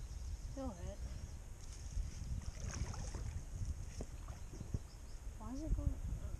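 Wind buffeting the microphone in a steady low rumble, over the flowing water of a small creek. A short murmur of a voice comes about a second in, and another near the end.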